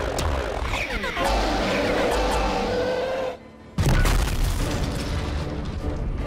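Action-cartoon soundtrack: dramatic music with booming hits. The sound cuts out for about half a second, then a loud boom comes in about four seconds in.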